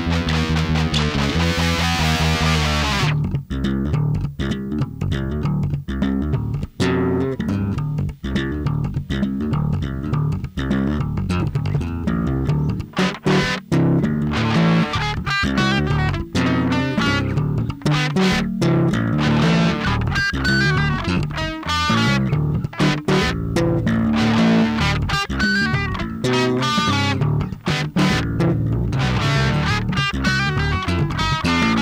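Rock demo track with electric guitar and bass guitar playing a riff: a dense, full passage for about the first three seconds, then a choppy riff broken by frequent short stops.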